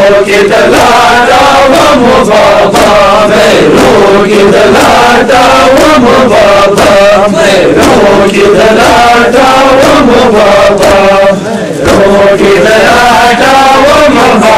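A Muharram noha lament chanted by male mourners, loud, with a steady beat of matam (chest-beating) running under the chanting.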